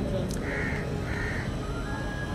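Two short bird calls about half a second apart, over faint background noise.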